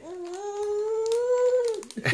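A young child's voice holding one long vocal note for nearly two seconds, its pitch slowly rising and then dropping off just before it stops.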